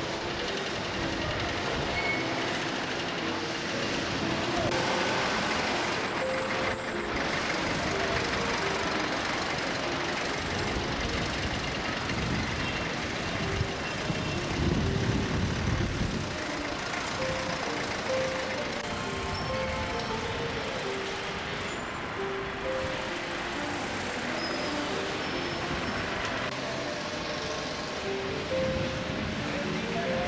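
Outdoor street traffic noise, steady throughout, with a heavy vehicle passing about halfway through, its low sound swelling and fading.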